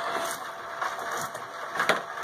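Hobby rock tumbler running: a steady faint motor hum with a low churning noise, and one sharp knock near the end.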